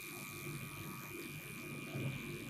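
A faint, steady low buzzing hum with a thin high-pitched tone above it.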